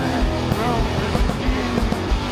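Noise rock band playing live, with distorted guitars and bass over a steady drum beat. About half a second in, a pitched line bends up and then back down.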